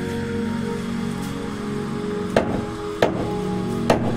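Heavy meat cleaver chopping through goat rib bones into a wooden log chopping block: three sharp strikes in the second half, over steady background music.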